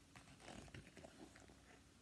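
Faint rustling and light crackles of a large picture book's paper pages being handled as the book is turned and lifted open, a few soft sounds in the first second and a half.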